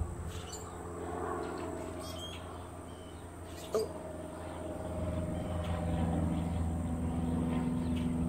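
Outdoor ambience: a few short, faint bird chirps over a steady low hum that grows louder in the second half.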